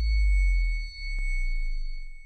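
Synthesized logo sting: a deep bass boom with steady high ringing tones held above it, dipping briefly just before a second in and fading out just after the end, with a single sharp click about a second in.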